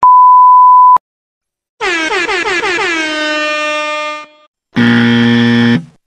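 A one-second censor bleep, a single steady high beep that cuts off sharply. Then a tone that slides down in pitch and levels off over about two and a half seconds, and near the end a harsh, steady game-show-style buzzer lasting about a second.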